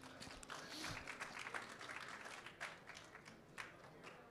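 Faint, scattered applause from an audience: irregular individual hand claps.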